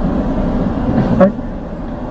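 Steady low rumble of a car's cabin noise while it waits in a queue, with faint murmured voices. The rumble drops away abruptly a little over a second in.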